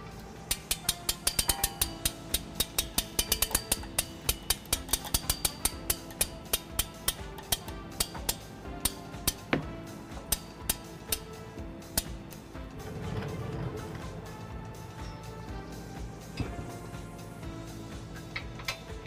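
Background music over a run of sharp clicks, about five a second at first, then sparser and stopping about two-thirds of the way through, as the front hitch's mounting bolts are started into the frame rail with a hand tool.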